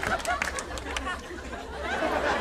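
Indistinct background chatter of a coffee-house crowd, with scattered light clicks.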